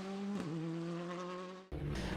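Hyundai rally car's engine heard from a distance, a buzzing note climbing in pitch as it accelerates, dipping briefly at a gear change about half a second in, then climbing again until it cuts off suddenly near the end.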